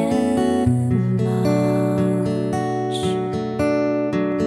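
Acoustic guitar playing chords, strummed and plucked, in an instrumental passage of an acoustic pop song.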